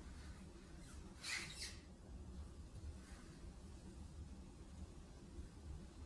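Quiet room tone with a low hum, and one brief hissy noise lasting about half a second, a little over a second in.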